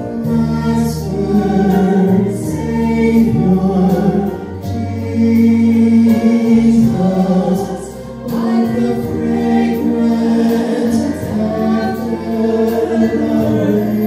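A man and a woman singing a worship song together into microphones, over an instrumental accompaniment with a steady bass line.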